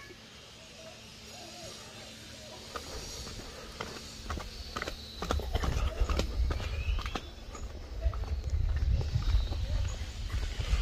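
Footsteps on a flagstone path, a run of light clicks, with a low rumble on the microphone that grows louder from about halfway through.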